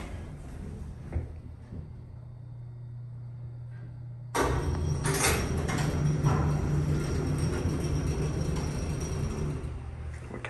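Steady low hum of a 1945 Otis geared traction elevator, then about four seconds in a sudden louder rumble of its sliding doors opening that runs for several seconds.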